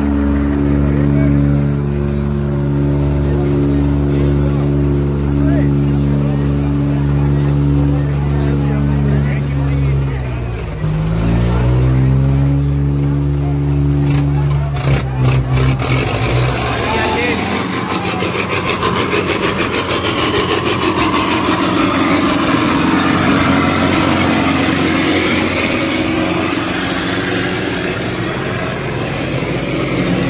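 Tractor diesel engine running hard and steady at high revs, as in a tractor tug-of-war pull. About ten seconds in, its pitch sags and climbs back. From about sixteen seconds on, it is mixed with a rougher, noisier sound.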